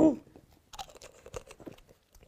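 A person drinking from a plastic water bottle: a few faint gulps and small clicks, after a short "ooh".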